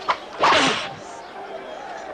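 A whip lashing a man's back, one crack just after the start, followed at once by a short cry of pain. The lashes repeat about every two seconds.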